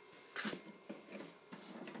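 A man laughing quietly: a breathy snort of air about half a second in, then soft, low chuckles.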